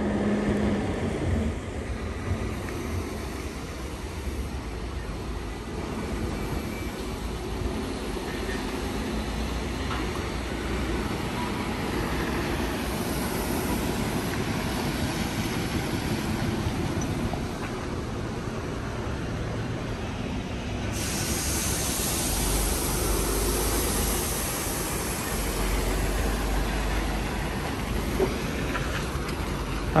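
Steady outdoor din from a large railway-station construction site: a low rumble with a mix of machinery and rail-traffic noise. About two-thirds of the way through, a sharper hiss joins in and stays.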